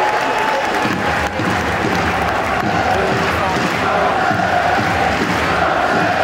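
Large stadium crowd of football supporters chanting together, loud and unbroken, over a low rhythmic beat.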